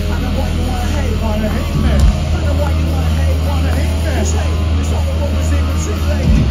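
A loud, sustained low bass drone from a rock band's stage PA, with the crowd's voices shouting over it; the drone shifts about two seconds in.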